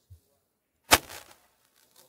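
A single sharp crack about a second in, with a short ring after it.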